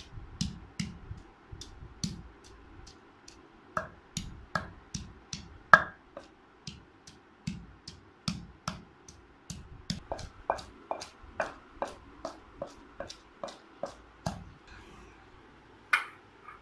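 Wooden pestle pounding peeled garlic cloves in a heavy stone mortar, crushing them into a paste: steady thuds about two a second, stopping about a second and a half before the end, with one sharp knock right at the end.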